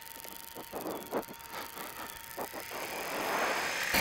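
Faint motorcycle riding noise picked up through the helmet intercom microphone: a low hiss with a few soft knocks, swelling toward the end as the bike gathers speed.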